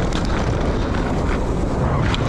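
Mountain bike running fast over a dry dirt trail: steady low tyre rumble buried under wind rushing over the camera microphone, with a few short clicks and rattles from the bike.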